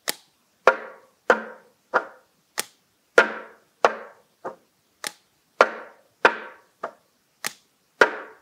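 Plastic cups knocked down on a wooden school desk, mixed with hand claps, in an even pattern of about thirteen sharp knocks, roughly one every 0.6 seconds. It is a cup-rhythm accompaniment played alone, without the chant.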